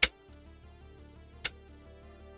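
Two sharp clicks about a second and a half apart, from small parts being worked by hand on an aluminium-extrusion 3D printer frame, over steady background music.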